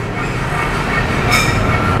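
Steady abrasive scraping on the lip of a curb-damaged aluminium alloy wheel as the gouges are worked smooth by hand, with a faint metallic squeal and a brief sharper scrape about one and a half seconds in.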